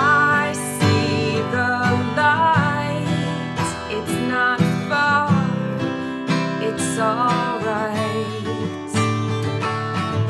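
A woman singing a song's chorus while strumming an acoustic guitar, her voice held at a moderately loud mezzo forte over steady strummed chords.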